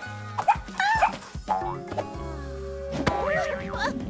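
Cartoon background music with a few short, high, yelping calls from a cartoon puppy.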